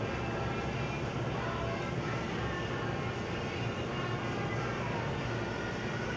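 Steady low hum of a shop's background ambience, even in level throughout, with faint music playing underneath.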